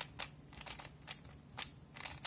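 Plastic layers of a bandaged 3x3 puzzle cube being turned by hand, giving a quick series of about six sharp clicks, the loudest about one and a half seconds in, as a move sequence is repeated.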